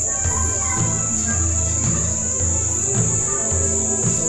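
Film background music with slow, pulsing low bass notes, over a constant high-pitched cricket shrill.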